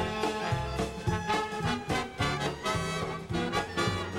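Swing music with brass and a steady beat under a moving bass line.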